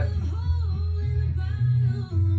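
A country song playing on a radio: a singing voice over guitar and a steady bass.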